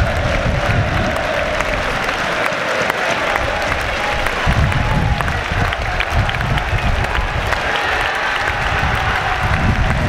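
Football crowd and players applauding, a steady mass of clapping with voices mixed in.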